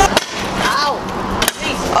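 Stunt scooter wheels rolling over rough concrete on a sloped bank, with a sharp clack near the start and another about a second and a half in.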